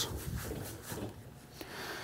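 A cloth faintly rubbing over a sheet of aluminium as it is wiped clean with an isopropyl alcohol and water mix before taping.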